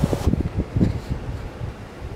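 Uneven low rumbling of wind buffeting and handling on the microphone inside a car cabin, fading toward the end. A steady hiss underneath cuts off sharply just after the start.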